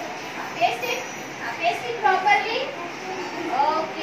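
Young children chattering in high-pitched voices, in short phrases with no clear words.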